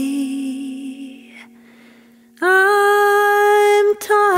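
Song: a held note fades out over the first second and a half, then after a brief lull a voice comes in on a long, steady sung note that holds until near the end.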